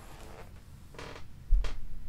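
Gaming chair creaking in short bursts as a man shifts his weight while laughing, with a sudden heavy low thump about one and a half seconds in, the loudest sound.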